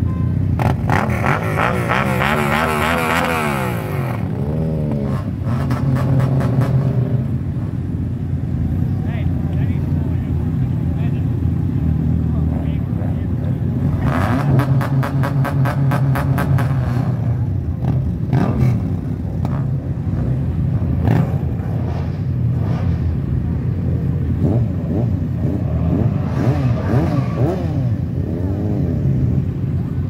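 Vehicle engines idling, revved several times with the pitch rising and falling, the longest rev a couple of seconds in, and a harsher rapid-firing burst about halfway through. People talk in the background.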